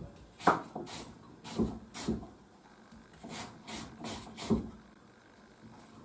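Kitchen knife cutting through peeled apple and knocking on a wooden cutting board: about ten irregular chopping strokes, then stopping a little before the end.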